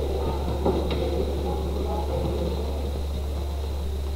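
Steady low hum of an old film soundtrack, with faint indistinct sounds over it and a brief tick about a second in.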